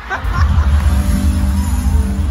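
Live band music played loud through the venue's PA speakers, dominated by a heavy bass with a few held notes above it.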